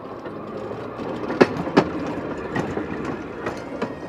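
A train running on the rails: a steady rumble with several sharp clacks of wheels over rail joints, the loudest two close together about a second and a half in.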